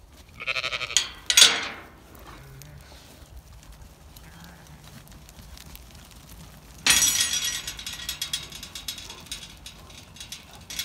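Zwartbles sheep bleating twice in quick succession, the second call louder. About seven seconds in, a sudden scuffling rustle starts and trails off.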